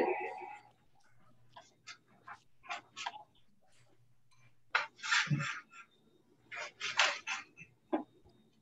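A person laughing in short breathy bursts about five seconds in, with a faint steady hum and scattered small clicks and rustles around it, and another short noisy burst near the end.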